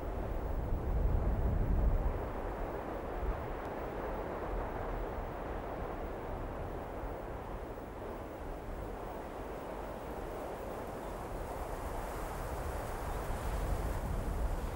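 Outdoor wind rumble, loudest in the first two seconds, over a steady hiss. Near the end the hiss grows as an off-road vehicle approaches on a dirt track.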